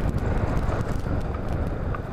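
Yamaha Majesty maxi scooter riding along: steady wind and road noise with a low drone from the scooter underneath.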